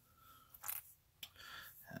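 Faint clicks and light scraping as small resin model parts are picked up and handled by hand, with a short rustle a little before one second in.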